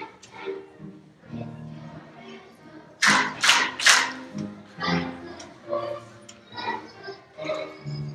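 A choir of young children singing a lively song, with three loud claps in quick succession about three seconds in.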